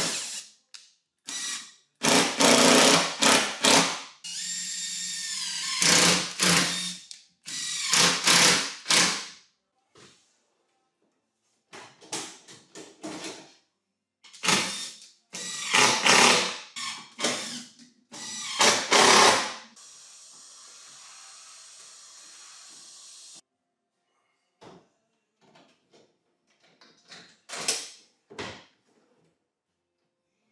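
Cordless impact driver driving screws into kitchen cabinet units in a string of short bursts. A steady hiss runs for a few seconds past the middle, and a few lighter clicks come near the end.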